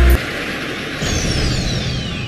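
Bass-heavy edit music cuts off just after the start, leaving a steady noisy rush. About a second in, a high whine slides steadily downward, a typical anime-style sound effect.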